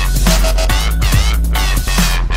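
Instrumental dubstep: a deep, sustained bass under sweeping synth sounds that bend up and down, with regular drum hits and no vocals.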